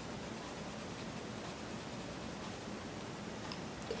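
Soft, steady scratching hiss of a Staedtler Ergosoft colored pencil shading on a coloring-book page.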